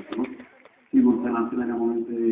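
A man's voice over a hall's sound system: a word trails off, then after a brief pause comes a long, held hesitation sound at one steady pitch.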